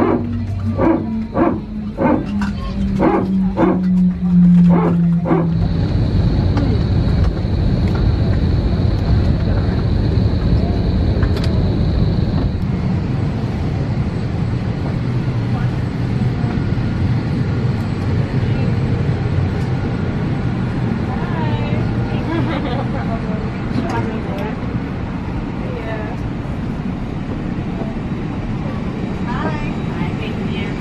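A music track plays for the first five seconds or so, then gives way to the steady air and ventilation noise of an Airbus A321 cabin parked at the gate, with passengers talking and moving about as they deplane. A thin high whine sits over the cabin noise for about seven seconds after the music ends.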